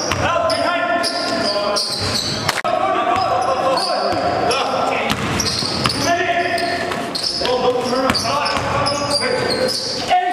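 A basketball dribbled on a gym floor amid people's voices, echoing in a large hall.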